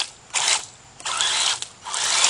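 Electric RC monster truck's motor and gear drivetrain whirring in three throttle bursts as it churns through mud.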